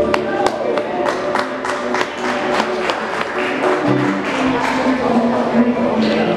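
A live band's final held chord cuts off, then a small audience claps, about three claps a second, with voices talking among them.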